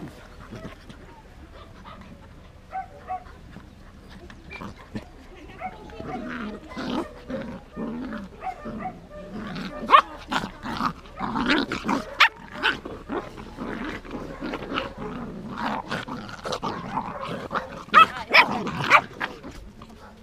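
Two cocker spaniel puppies play-fighting, growling and yapping at each other. The first few seconds are quieter, then the scuffle becomes more vocal, with the sharpest yaps about ten seconds in and again near the end.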